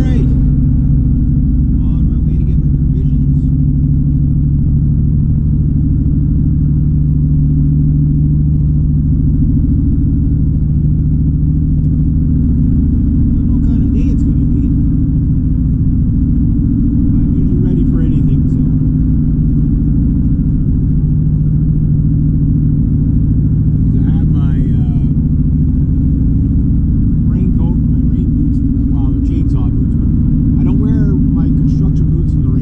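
Steady, loud drone of a Honda Civic's engine and tyres heard from inside the cabin while cruising on a highway, with brief higher wavering sounds now and then over it.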